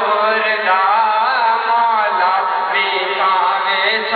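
Devotional chanting by a voice in long, wavering melodic lines, with a steady low drone beneath.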